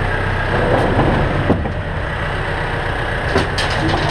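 A vehicle engine idling steadily, with sharp metallic knocks as the aluminium soapbox cart is handled: one about a second and a half in and a quick cluster near the end.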